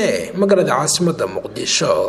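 Speech: a voice talking continuously in Somali.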